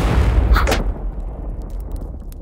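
Cartoon explosion sound effect of Skye's plane crashing into the door and blowing up. A loud blast is followed by a second sharp crack about half a second in, then a low rumble that slowly dies away.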